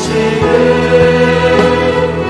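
A Korean hymn sung by a choir with instrumental accompaniment, the voices holding long sustained notes.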